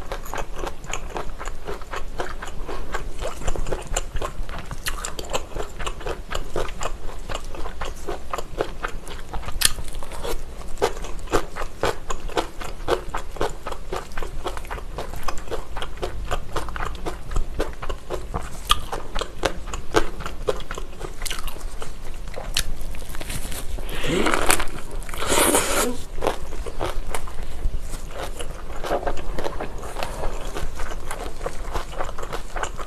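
Close-miked eating of a thick gimbap filled with pork belly, lettuce and a whole cheongyang chili, along with kimchi: continual crunching, chewing and wet mouth clicks, with a louder, noisier crunch about 24 to 26 seconds in.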